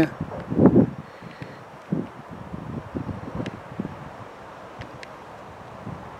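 Wind and rustling on the camera microphone with a few soft bumps, and a short sound from a man's voice about half a second in.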